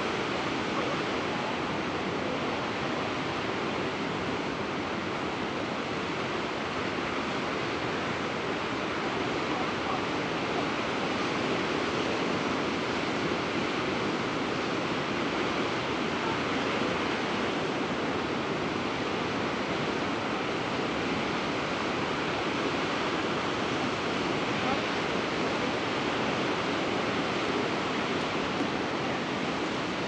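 Steady ocean surf: a continuous wash of waves at an even level, with no distinct single crash standing out.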